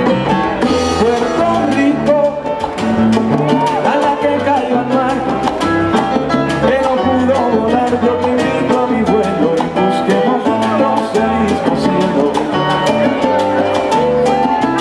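Live Latin band playing an up-tempo dance number: a stepping bass line and busy, steady percussion, with piano and a melody on top.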